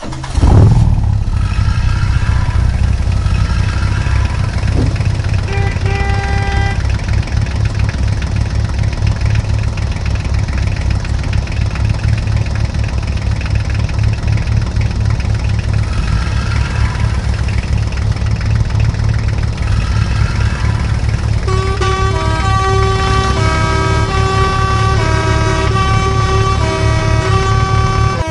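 Recorded heavy-truck engine sound effect running with a steady deep rumble, laid over toy trucks that have no engine. Short horn honks come in twice, and over the last several seconds a horn plays a run of changing notes.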